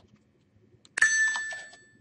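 A single computer alert ding: a bright chime that starts sharply about a second in and fades away over the next second.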